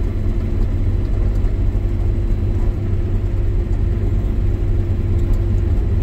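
Combine harvester running, heard from inside its cab: a steady low engine drone with a constant hum of machinery above it, no change in pace.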